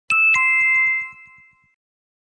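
Two-note chime sound effect: a high ding, then a lower one a quarter second later, both ringing out and fading within about a second and a half.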